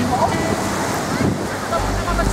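Small Baltic Sea waves washing in over a sandy shore in a steady rush, with wind buffeting the microphone near the end.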